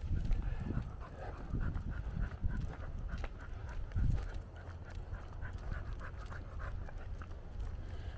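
A dog panting during a walk, with footsteps on pavement and a low rumble, and a small thump about four seconds in.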